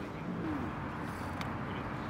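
Outdoor ambience with the low coos of a pigeon over a steady background hiss, and a single sharp click about one and a half seconds in.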